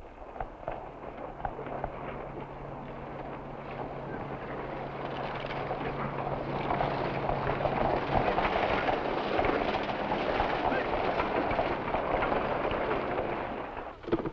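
Busy old-west town street: indistinct crowd chatter and the clatter of horses' hooves, growing steadily louder. A low steady hum runs under it and stops about halfway through.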